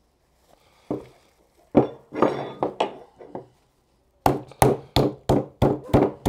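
A metal meat mallet pounds a bone-in pork chop through cling film on a wooden cutting board. A few scattered knocks come in the first half, then a quick run of blows about three a second over the last two seconds.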